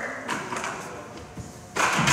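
Plastic buckets being moved and set down on a wooden stage floor: a light knock early on and a sharper, louder knock near the end, ringing briefly in the hall.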